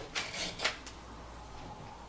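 Paper pages of a large book rustling as they are turned, a few short swishes in the first second.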